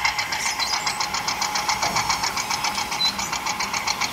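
Miniature toy tractor running as it drives along, giving a rapid, even engine-like pulsing of about a dozen beats a second.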